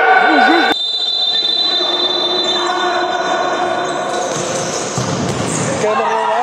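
Echoing indoor sports-hall sound of futsal play: the ball thudding and bouncing on the wooden court. A man's voice is heard briefly at the start.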